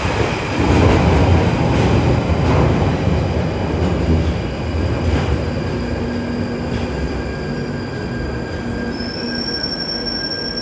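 A London Underground Northern line 1995-stock train running into the platform and braking: a loud rumble of wheels on rail, loudest about a second in and easing as it slows, with a few clanks. Near the end a high-pitched squeal sets in as the train draws to a stop.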